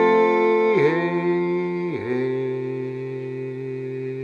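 A man's voice holding long wordless notes over ringing acoustic guitar chords, the pitch dipping briefly twice, as the song winds down.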